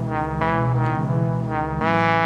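Sampled trumpet melody played back from an Akai MPC One: a slow phrase of held notes. The sample is dry, with its Air Flavor, stereo-width and delay effects switched off.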